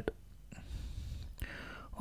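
Faint breathy noise, like a person breathing in between phrases, with a single soft click about one and a half seconds in.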